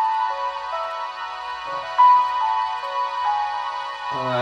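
Recorded solo piano intro played through a home-built two-way speaker (10-inch GRS woofer, budget 1-inch dome tweeter): slow single notes, a louder one struck about two seconds in. The piano reproduces cleanly, with no distortion or buzzing from the tweeter, the sign of a good unit.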